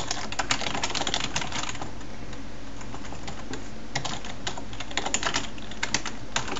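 Typing on a computer keyboard: rapid runs of keystrokes, thinning out for about two seconds in the middle, then picking up again near the end.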